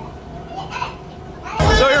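Faint, scattered voices in the background, then about one and a half seconds in an abrupt jump to a man talking loudly close up, with a noisy room behind him.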